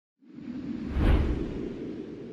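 Whoosh sound effect for an animated logo intro, swelling to a deep boom about a second in, then fading away slowly.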